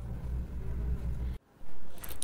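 A low, steady rumble that cuts off abruptly about one and a half seconds in.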